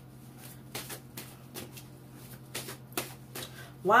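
Tarot cards being shuffled by hand: a string of about a dozen irregular sharp card flicks.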